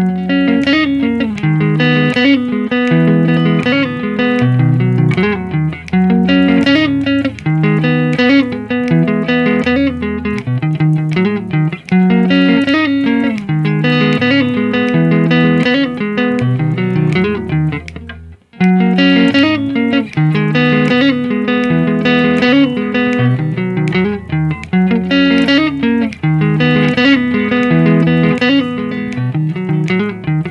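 Squier Stratocaster electric guitar playing a repeating pattern of low-register notes at a steady tempo of 80, a practice exercise. The playing breaks off for a moment about two-thirds of the way through, then picks up again.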